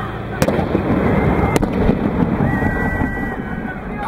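Pyrotechnic explosion at a human-cannonball cannon: a sharp bang about half a second in, a second crack about a second later, and a run of crackling like fireworks that dies down near the end.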